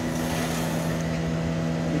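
Steady hum and rushing drone of glassblowing studio equipment: the gas-fired reheating furnace (glory hole) and its blowers, running continuously.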